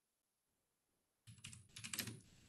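Computer keyboard being typed on: a quick run of several keystrokes beginning a little past halfway.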